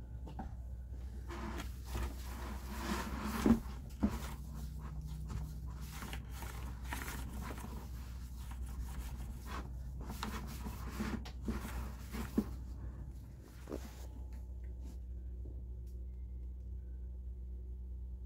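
Paper towel rubbing over the side of a plastic bucket, an irregular run of swishing strokes that dies away after about thirteen seconds, with two sharp knocks from handling the bucket around three to four seconds in. A steady low hum runs underneath.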